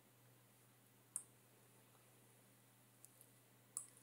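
Near silence with a faint steady hum, broken by two sharp computer-mouse clicks, one about a second in and one near the end, with a couple of fainter ticks just before the second.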